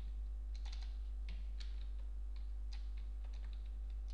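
Computer keyboard keystrokes: about a dozen separate key clicks at an uneven pace, as characters of a command are deleted with the keys. A steady low electrical hum runs underneath.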